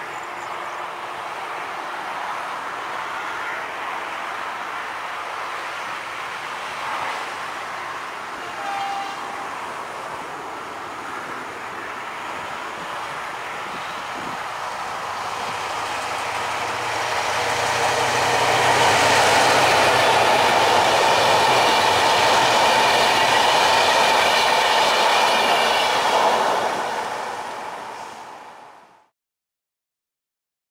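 Ls800 diesel locomotive hauling passenger coaches along the track, approaching and passing close by. Its engine and the wheels on the rails grow loud from about two-thirds of the way in, stay loud for several seconds, and begin to fade near the end.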